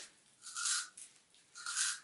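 Cucumber being twisted through a handheld plastic spiral cutter: two short rasping scrapes as the blade shaves into the cucumber, one about half a second in and one near the end.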